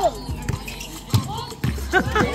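A basketball bouncing on an outdoor hard court: sharp thuds about a second in and again near the end, over voices and music.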